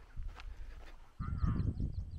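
Footsteps on a sandy track, then, a little over a second in, an abrupt change to wind rumbling on the microphone. Over the wind come a short wavering call and birds chirping in quick, high short notes.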